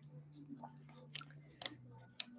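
Faint sounds of a man drinking from a plastic water bottle: a few soft, separate clicks and crackles over a low steady hum.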